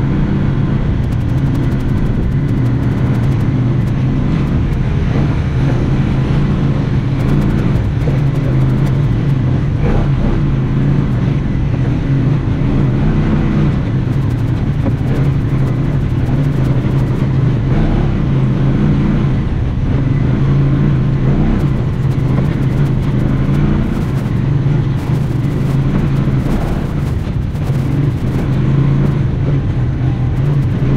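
A UTV's engine running steadily while driving along a dirt trail, heard from on board. Its low note holds an even pitch with only slight rises and falls.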